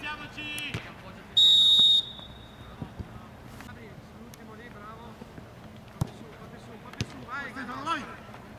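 A referee's whistle blown once in a short, sharp, high blast about a second and a half in, the loudest sound here. Players shout around it, and a football is kicked twice, about a second apart, near the end.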